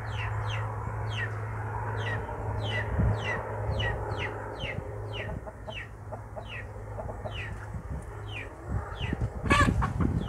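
Chickens in a yard: a bird's short, high chirps, each sliding downward, repeat about two to three times a second over a steady low hum. Near the end a chicken gives one loud, short squawk, the loudest sound here.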